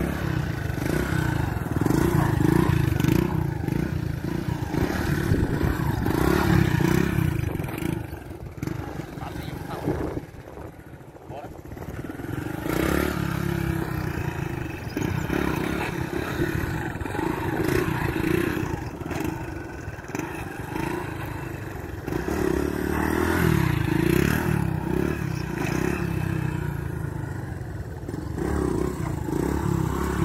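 Small step-through motorcycle engine revving up and easing off as the rider holds wheelies, the note rising and falling. It drops away about ten seconds in, then builds again.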